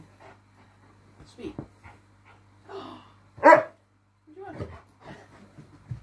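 A large husky-type dog barks once, loudly, about three and a half seconds in, followed about a second later by a shorter, softer whine. Small quiet sounds and a faint low hum lie underneath.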